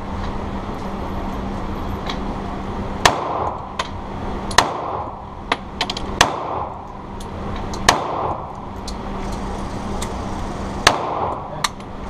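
Five shots from an H&K USP 45 pistol (.45 ACP), each followed by a short echo off the walls of an indoor range. The shots come at a steady pace about a second and a half apart, with a longer gap before the last, and a few fainter sharp clicks fall between them.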